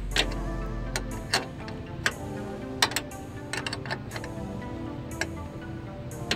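Background music with a steady run of notes, over irregular sharp clicks and clinks of a steel wrench on the battery hold-down clamp bolt as it is turned and repositioned.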